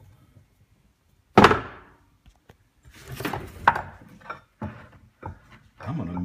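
A heavy rusty iron piece is knocked down onto a workbench with one loud thunk about a second and a half in. Scraping, knocks and a few light clicks follow as the iron pieces are handled.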